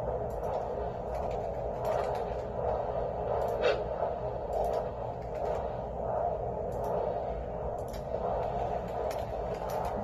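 Handheld fetal Doppler's speaker giving a steady whooshing static, broken by irregular scratchy clicks as the probe moves over the gel. The signal is not yet a clear heartbeat tone while the probe searches for the baby's heartbeat.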